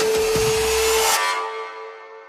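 End of an electronic dance music track: a held synth note under a hissing noise sweep, which cuts off about a second in and leaves the note to fade out.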